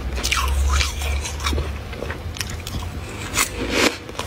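Mouthful of freezer frost being bitten and chewed: a run of sharp, crisp crunches, over a steady low hum.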